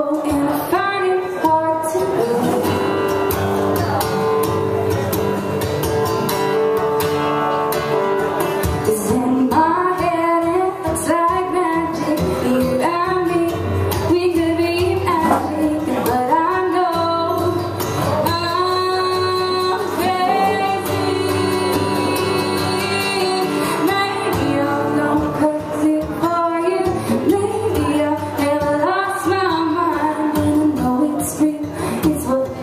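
A woman singing live with her own strummed acoustic guitar, amplified through a PA.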